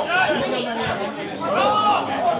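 Several voices calling out over one another on a football pitch during play, none clearly heard as words.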